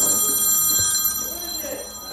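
A bright, high ringing tone like a bell or chime, starting suddenly and fading away over about two seconds.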